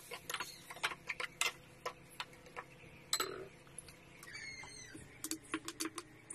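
A spatula clicking and scraping against a wok during stir-frying, in irregular sharp taps a few times a second.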